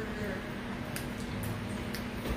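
Faint mouth clicks and smacks from people chewing lemon slices, over a steady low hum.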